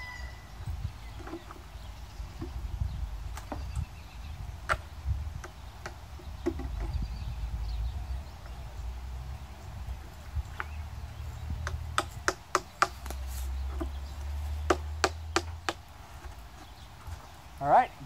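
Hammer driving a nail through a wooden cedar fence-picket birdhouse into a tree trunk. A few single taps come first, then two quick runs of about five and then four strikes in the second half. A low rumble runs underneath.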